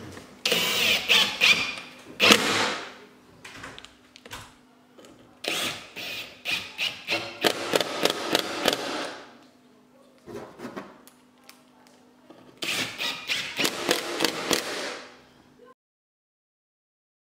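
Cordless drill/driver driving screws down through a bent plywood chair seat, in three runs of a few seconds each with short pauses between.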